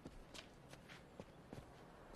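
Faint footsteps: a few soft steps, roughly one every half second, over a near-silent background.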